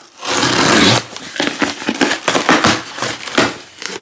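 A box cutter slits the packing tape along a cardboard box, a long loud scraping rip in the first second. Then comes a run of short scrapes and crinkles as the tape and cardboard flaps are worked open.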